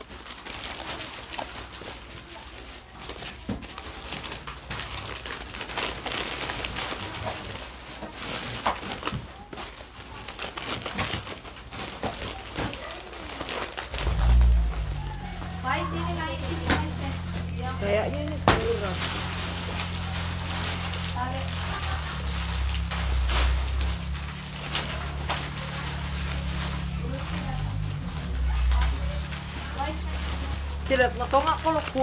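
Plastic bags rustling and crinkling with small clicks as snacks are packed into them. About halfway through, background music with a steady bass comes in underneath, with faint voices.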